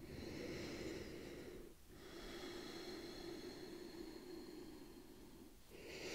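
A woman breathing slowly and faintly: one breath of about two seconds, then a longer one of about three and a half seconds.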